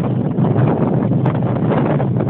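Wind buffeting the phone's microphone: a steady loud rumble with no words over it.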